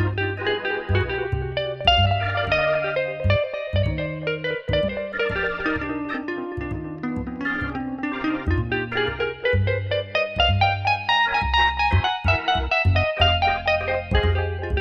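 Instrumental jazzy backing track in C minor at 127 beats a minute with the drums left out. Guitar plays over a walking bass line.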